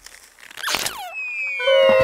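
Cartoon sound effects: a quick downward-sliding whistle about half a second in, then from about a second and a half a loud held whistling tone that slowly sinks in pitch, the falling sound for elephants tumbling through the air.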